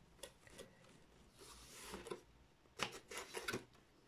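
Faint rustling of paper envelopes and a cardboard cover being handled, with a soft slide of paper in the middle and a few light taps and rustles near the end.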